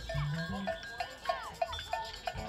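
Live rock band playing: an electric bass line moving from note to note under drums that keep a steady tick about four times a second.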